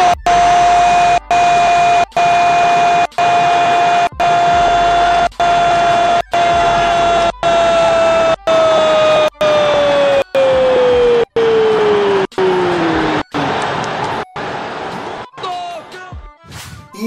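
A TV football commentator's long drawn-out goal shout: one held "gooool" at a steady pitch for about ten seconds, then sliding down in pitch until it fades, over a noisy background. The audio drops out briefly about once a second.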